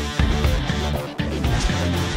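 Rock music with guitar, bass and drums playing a steady beat.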